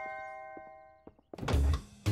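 Cartoon sound effects: a doorbell chime dying away, then a loud low thunk about one and a half seconds in as the front door is opened.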